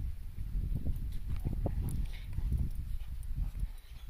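An Irish Red and White Setter and an English Springer Spaniel playing rough together on a lawn: irregular low thuds and scuffles of paws and bodies.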